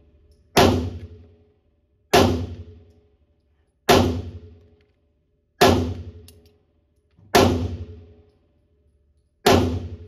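Six single shots from a Tisas 1911 Night Stalker 9mm pistol firing 147-grain flat-nose rounds, spaced about one and a half to two seconds apart in slow aimed fire. Each shot is followed by a fading echo off the walls of an indoor range.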